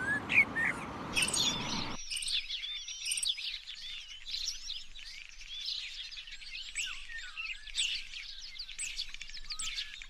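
A chorus of many songbirds chirping and twittering, dense overlapping high quick notes. For the first two seconds a steady rushing noise sits beneath a few louder calls, then cuts off abruptly and leaves the chorus alone.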